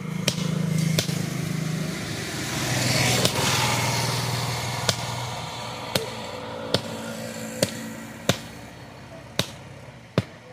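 Hammer blows on a red-hot axe head on an anvil, sharp and irregular, about one a second. Behind them a motor vehicle's engine passes, loudest about three seconds in, then fades away.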